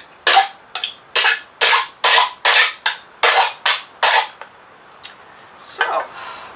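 Nail point being filed back and forth on a nail file to sharpen it: about ten quick scraping strokes over four seconds. A single short click near the end.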